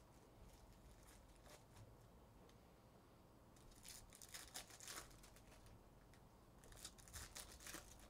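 Foil trading-card pack wrappers torn open and crinkled by hand, faintly, in two spells of short crisp rustles: one around the middle and one near the end.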